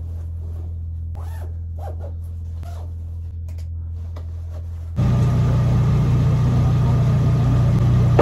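Rustling of padded camouflage coveralls being pulled on, with a few zipper pulls, over a steady low hum. About five seconds in, the sound jumps to a louder, steady idling from a pickup truck's engine running in a garage.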